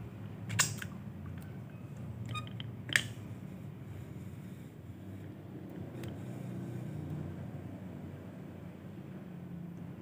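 Handling noise: two sharp clicks, about half a second and three seconds in, with a few fainter ticks, over a steady low hum.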